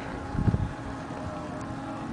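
A small engine running steadily at an even pitch, heard as a constant hum. A brief low rumble of wind on the microphone comes about half a second in.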